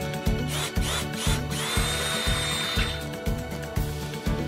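Cordless drill run in short trigger bursts, each spinning up in pitch, with one longer run about two seconds in, as the bit bores through a wooden board. Background music with a steady beat of about two thumps a second plays underneath.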